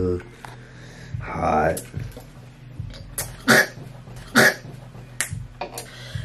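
A person reacting to a burning swig of apple whiskey: a short muffled vocal sound, then a few short, sharp coughs about a second apart.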